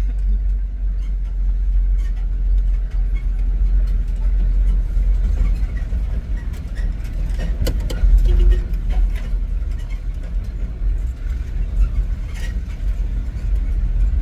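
Low, steady engine and road rumble heard inside the cab of a moving pickup truck, with a few knocks and rattles around the middle.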